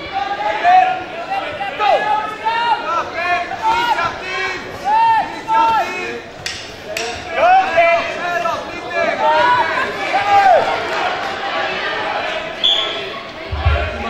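Several voices shouting in a large, echoing sports hall during a full-contact karate bout, with two sharp thuds of strikes landing about six and a half and seven seconds in.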